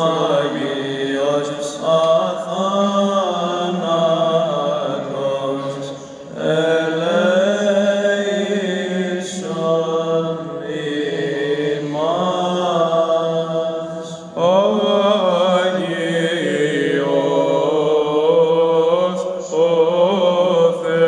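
Byzantine chant in a Greek Orthodox church service: voices sing long, melismatic phrases with gliding pitch, broken by short breaths.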